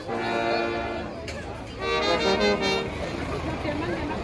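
Live brass group of trumpets and trombones playing held chords in two phrases with a short gap between them. About three seconds in, the music gives way to the chatter of a street crowd.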